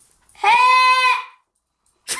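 A young boy's single drawn-out shout, held on one steady pitch for about a second, bleat-like in tone.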